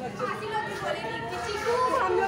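Crowd chatter inside a stone hall: several people talking at once, with children's and women's high voices calling out over one another.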